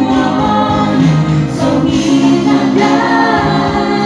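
A woman singing a Dusun-language pop song into a microphone over a karaoke backing track, her voice carrying a melody that bends and slides above the steady held chords of the accompaniment.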